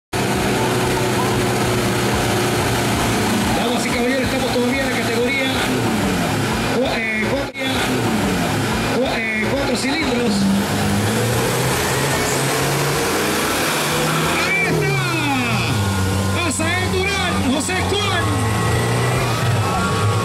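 Four-cylinder off-road 4x4 trucks, a Nissan Patrol and a Toyota, running at the start line, their engines revving up and down, with voices talking over them.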